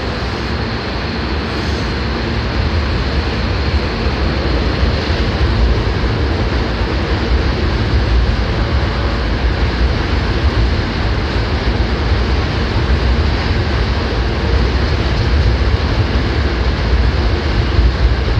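Hankyu 1000 series electric train pulling out of the platform and gathering speed: a dense rumble of wheels and traction motors that grows louder over the first few seconds and then holds steady as the cars pass close by.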